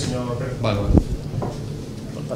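Low, indistinct voices in a small meeting room, with a short knock about a second in.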